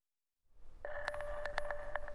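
Dead silence for about half a second, then a TV news weather bumper sound: a held electronic tone with a series of quick ticks over it.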